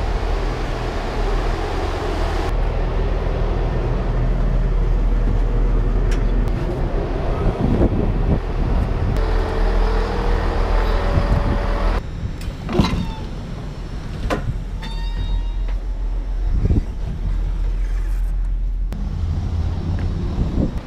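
Steady low rumble of passenger trains standing at station platforms, changing abruptly a couple of times, with a few short sharp knocks in the second half.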